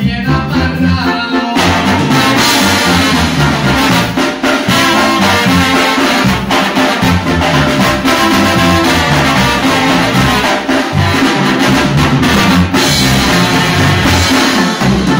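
A live band plays with trombone and trumpet leading over keyboard and drum kit, with cymbals. The full band comes in louder about one and a half seconds in.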